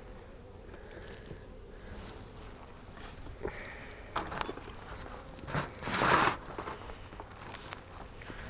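Wooden beehive cover and feeder being handled and set down on a neighbouring hive: scattered light knocks and scrapes, with a louder rustling scrape about six seconds in.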